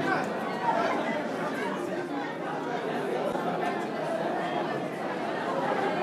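Indistinct chatter of many people talking at once, a steady low murmur with no single voice standing out.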